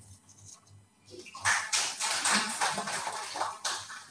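Brief audience applause, starting about a second in and dying away just before the end.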